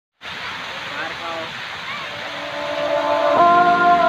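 Fountain water jets spraying with a steady rush, under faint crowd chatter. About three and a half seconds in, background music with sustained chords comes in and gets louder.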